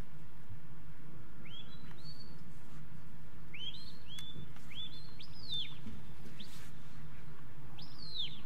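A handler's shepherd's whistle giving a working sheepdog its commands: short whistled notes that sweep up and then hold or fall, a pair about a second and a half in, then a quicker run of several notes, and one falling note at the end.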